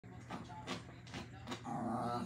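A small dog whining softly near the end, after a few faint taps.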